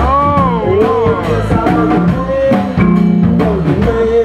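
Live band playing: a man sings a drawn-out note that bends up and down at the start, over electric guitar, drum kit and sousaphone.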